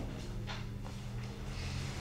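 Quiet room tone in a pause between sentences: a steady low hum, with a couple of faint, brief small noises.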